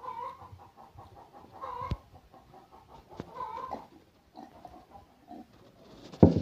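A few short pitched animal calls, spaced a second or two apart, with one sharp click just before two seconds in.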